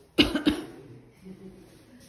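A person coughing twice in quick succession, close to the microphone.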